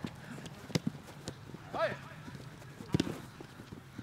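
Football being kicked on a grass pitch: a few sharp thuds of boot on ball, the loudest about three seconds in, with lighter scuffs of players running. A brief shout from a player about two seconds in.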